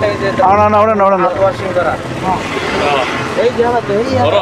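Men talking in Malayalam, overheard at a distance, over a steady low hum of street traffic.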